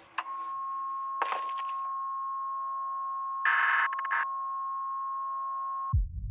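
A steady electronic tone of several pitches at once, held for about five seconds and cut off just before the end. It opens with a click and has two short noisy bursts, about a second in and midway through.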